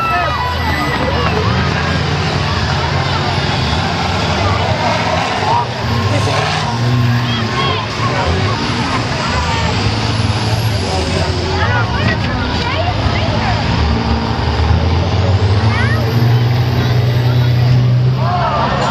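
Several school bus engines running and revving together, a steady low drone that grows louder near the end. Crowd voices yell and cheer over it.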